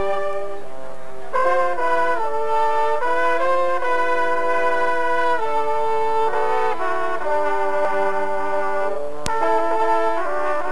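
A drum and bugle corps horn line playing on bugles in harmony, holding chords whose notes change every second or so. A single sharp click sounds about nine seconds in.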